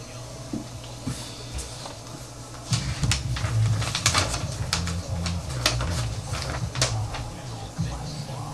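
Close handling noise starting about three seconds in: a rapid run of sharp clicks and rustles with low thumps, as papers and a phone are handled on a desk near the microphone.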